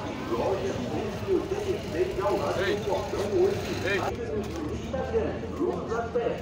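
Indistinct chatter of several people in a busy market crowd, with a low steady hum underneath.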